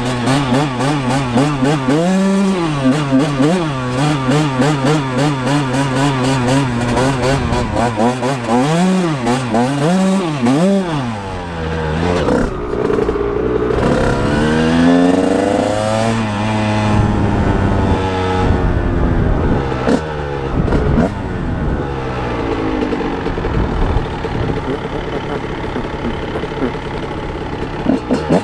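1999 Honda CR125R's 125 cc two-stroke single-cylinder engine being ridden hard, revving up and down with the throttle. The revs rise and fall in quick swings at first, then in longer, slower pulls from about halfway.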